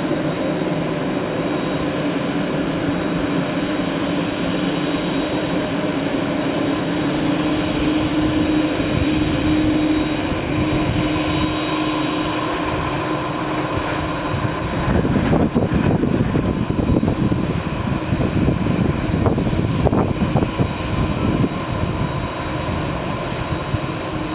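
Boeing 767 freighter's twin jet engines running at taxi idle: a steady whine made of several held tones. About fifteen seconds in, the lowest tone drops away and a louder, rougher rumble takes over.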